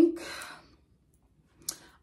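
A woman's breathy sigh out for about half a second, then a pause and a single small click just before she speaks again.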